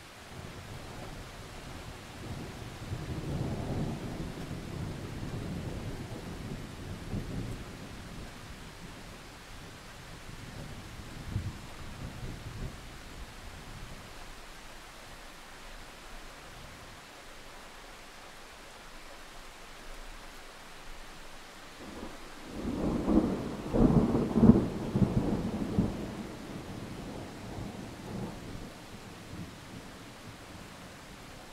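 Heavy rain with thunder: a long rolling rumble of thunder in the first several seconds, a short fainter rumble in the middle, then the loudest peal about 22 seconds in, breaking into several cracks over a few seconds before it dies away. The rain's steady hiss goes on underneath.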